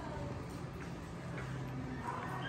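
Two small dogs play-wrestling on a sheet-covered futon: scattered light clicks and taps from their paws and scuffling, over a steady low hum.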